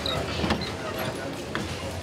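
Indistinct background voices in a room, with a few short knocks and clicks.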